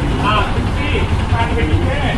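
Indistinct voices in snatches over a steady low rumble.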